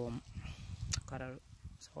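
A man speaking Romanian, with short pauses between words.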